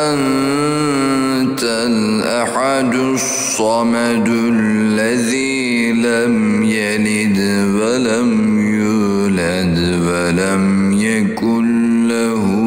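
A voice chanting an Arabic supplication in a slow, melodic recitation style, drawing out long, wavering held notes with hardly a break.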